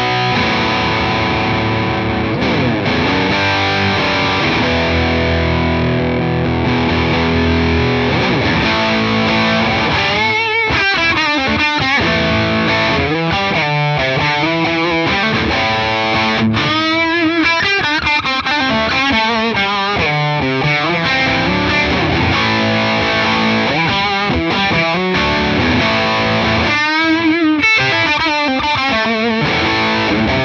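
Tokai Love Rock LS128 electric guitar played with distortion through a Hamstead amp: held, sustained chords for about the first ten seconds, then fast lead lines with bends and vibrato.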